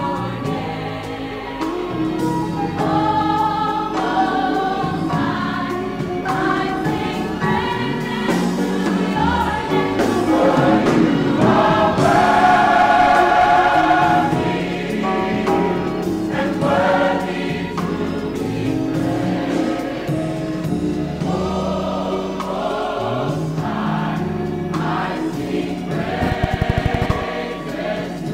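Gospel choir singing, swelling to its loudest on long held chords around the middle.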